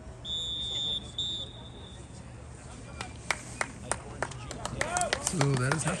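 Referee's whistle blown twice, a long high blast and then a shorter one, signalling the end of the first half. A few seconds later come scattered sharp claps and voices.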